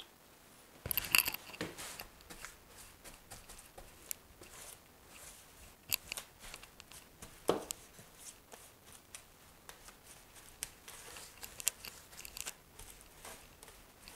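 A paintbrush scrubbing thick liquid waterproofing membrane (Laticrete Hydro Ban) into the inside corners of a shower niche on cement board: faint, irregular scratchy brush strokes.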